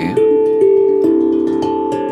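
Steel tongue drum struck with mallets: a slow run of about four ringing notes roughly half a second apart, each one sustaining under the next.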